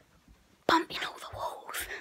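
A child whispering close to the microphone. It starts suddenly about two-thirds of a second in, after a short quiet.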